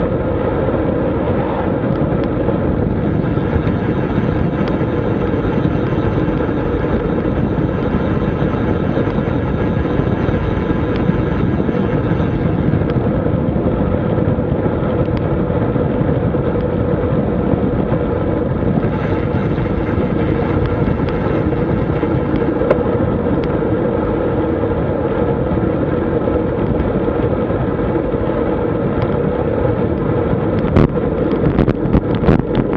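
Steady wind rush over a bike-mounted camera's microphone, mixed with tyre and road noise, from a road bike riding at about 37 km/h on asphalt.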